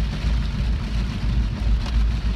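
Steady low rumble of a car heard from inside the cabin, with an even hiss of rain on the car.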